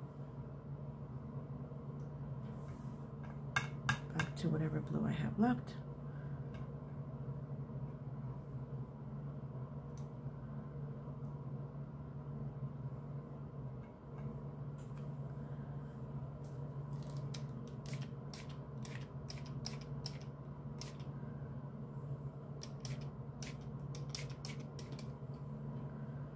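Light clicks and taps from watercolour brushwork, a flat sable brush working on textured paper, scattered irregularly over a steady low hum. There is a louder cluster about four seconds in, and a run of sharper ticks in the second half.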